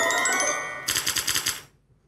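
Electronic game-show sound effect as the answer board shows its slots: a bright chime that shimmers and fades, joined about a second in by a rapid run of even ticking pulses. It dies away near the end.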